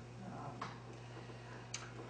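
A lull in a meeting room: a steady low hum of room tone, with two faint clicks, one just over half a second in and one near the end.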